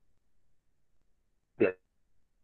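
A pause in a lecturer's speech, near silent, broken about a second and a half in by one short voiced syllable.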